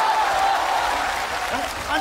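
Studio audience applauding, with a long drawn-out shout held over it that fades after about a second and a half.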